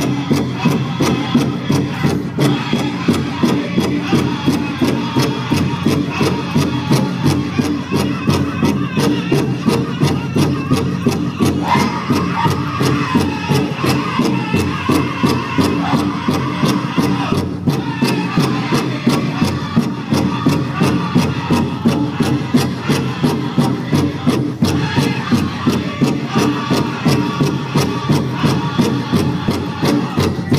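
A powwow drum group striking a large shared drum in a steady, even beat while singing a Women's Fancy Shawl song together.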